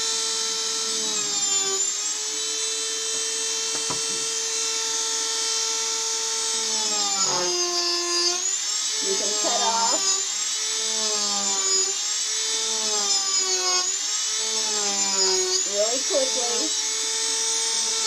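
Handheld rotary tool spinning a Kutzall tungsten-carbide burr with a steady high whine. From about seven seconds in, its pitch sags several times and recovers as the burr is pressed into the wood and cuts, then eases off.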